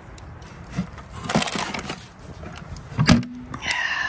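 An old box being opened and handled: a click, a rustling scrape about a second in, and a sharp knock near the end.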